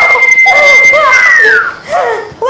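A shrill human scream held on one high pitch for about two seconds, then falling away, over another voice crying out and sobbing.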